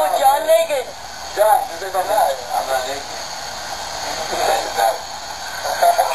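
People talking in short bursts over a steady background hiss, the words not clear enough to make out.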